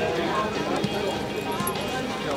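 Hoofbeats of a horse cantering on arena sand, heard as a few soft thuds under people talking.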